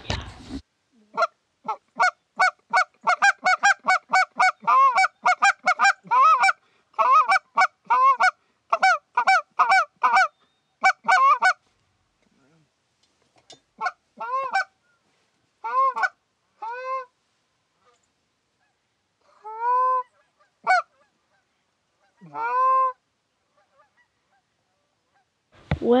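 Canada geese honking: a fast run of short honks for about ten seconds, then slower single honks, each rising and falling in pitch, spaced a second or two apart.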